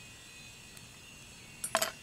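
A faint, quiet background, then a quick cluster of light clinks near the end from the toy kitchen's cookware being handled.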